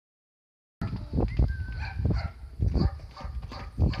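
Horse's hooves thudding on grass and earth in irregular heavy beats, starting just under a second in.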